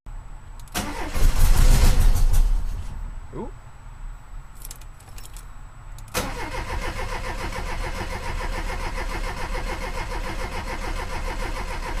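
Volkswagen engine being cranked over on the starter without catching, to draw fuel up to its newly cleaned carburetors. A short, loud burst comes about a second in, and steady, even cranking sets in about six seconds in.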